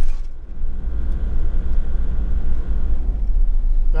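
Steady low rumble of a camper van's engine and tyre noise heard from inside the cabin while driving on a wet road.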